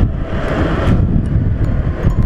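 Wind noise on the microphone of a motorcycle cruising at highway speed: a steady rush, heaviest in the lows, with the bike's running noise underneath.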